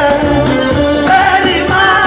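A Somali song performed live and loud: a man singing into a microphone over amplified backing music, his voice gliding and holding notes.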